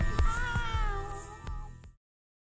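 Music track with a long meow-like call that rises briefly and then glides down, over sustained tones and a few sharp percussive strikes; the music fades out to silence at the very end.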